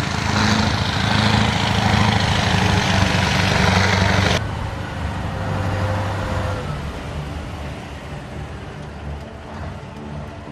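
Heavy eight-wheeled military trucks carrying missile launchers, their engines running loud with a deep rumble and hiss as they drive across rough ground. The sound drops suddenly a little over four seconds in, and a quieter engine sound carries on and fades.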